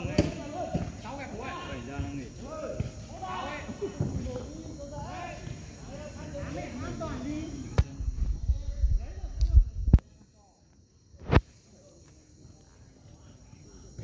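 Footballers shouting and calling to each other across the pitch, over a steady high chirring of insects. About eight seconds in, a loud low rumbling with a few knocks ends abruptly, and a single sharp knock follows a second and a half later.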